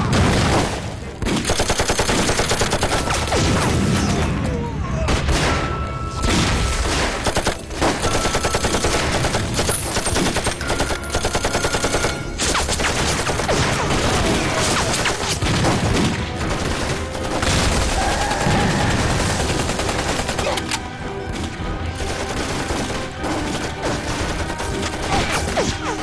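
Dense automatic gunfire from machine guns and rifles, firing in long rapid volleys as film battle sound effects, easing a little near the end.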